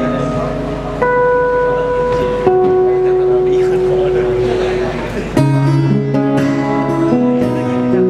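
Two acoustic guitars playing a slow duet: long ringing notes that change about a second in and again about two and a half seconds in, then a run of quickly plucked notes and chords from about five and a half seconds in.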